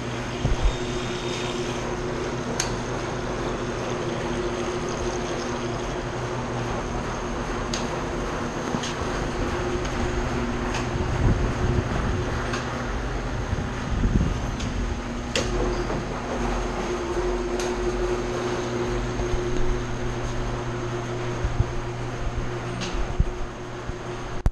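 SC50MD2 commercial washer-extractor running on new drum and motor bearings: a steady motor hum and drum rumble, with occasional sharp clicks.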